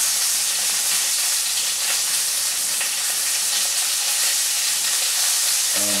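Pork sausage frying in a pan, a steady sizzle.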